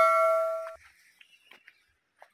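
The ringing tone of a single bell-like metal strike, fading and then cut off abruptly under a second in, followed by near silence.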